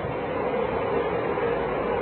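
Steady background noise with a faint constant hum, even and unchanging, with no distinct events.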